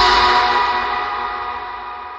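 The closing chord of an electronic intro jingle, several steady tones ringing out and fading away evenly.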